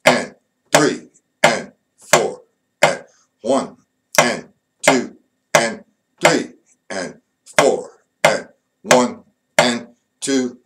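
A drummer counts eighth notes aloud in an even pulse ("one and two and…") while tapping each note of the reading exercise with a drumstick. A spoken count and a stick tap come together about every 0.7 s, steady throughout.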